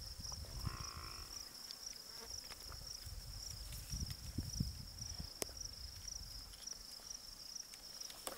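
Steady high-pitched drone of insects, with gusts of low rumble on the microphone and a single sharp click about five and a half seconds in.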